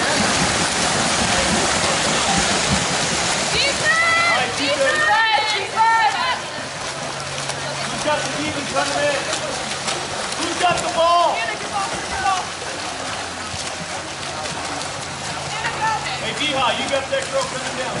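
Water splashing from several water polo players swimming hard across a pool, loudest in the first few seconds. High-pitched shouts from people at the pool come a few seconds in, again around the middle, and near the end.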